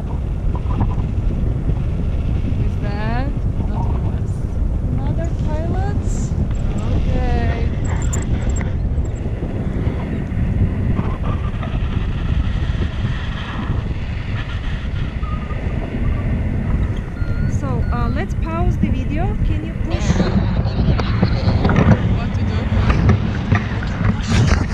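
Airflow buffeting the microphone of a handheld action camera in flight under a tandem paraglider: a steady low rushing with short snatches of voices over it.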